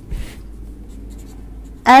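Pen writing on paper, with a short scratchy stroke just after the start and fainter scratching after it. A woman's voice begins just before the end.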